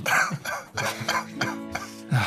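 Soft background music holding steady tones, with several short breathy vocal bursts over it, the strongest right at the start, like a stifled laugh or cough.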